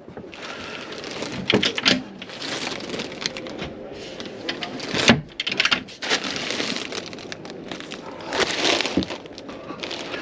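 Clear plastic protective wrapping on new motorhome mattresses rustling and crinkling as it is handled, with a few knocks from the wooden bed panels, the loudest about five seconds in.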